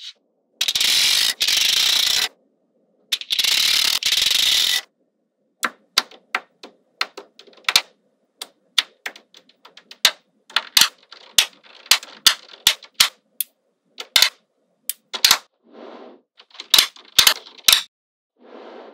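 Small neodymium magnet balls clicking sharply as they snap together and are pressed into place, in irregular runs of clicks. Two longer stretches of continuous noise, each about a second and a half, come in the first five seconds.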